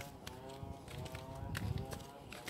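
Footsteps of someone walking over dry grass and fallen coconut palm fronds, a step roughly every half second, heaviest near the end.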